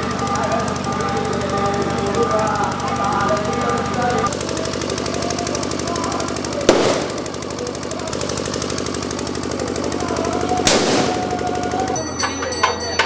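Firecrackers going off in a rapid, continuous crackle, with two louder firework bangs, one just past halfway and one near the end.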